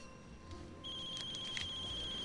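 Mobile phone ringing: a high, fast-trilling electronic ring that starts just under a second in and lasts about a second and a half, over faint background music.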